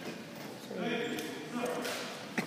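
A person's voice speaking, a short stretch of words starting a little before the middle.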